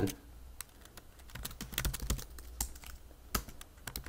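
Computer keyboard being typed on, a quiet, irregular patter of key clicks.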